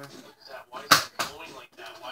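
Nerf Zombie Strike Doominator spring-powered dart blaster firing a shot: one sharp snap about a second in, followed by a fainter click.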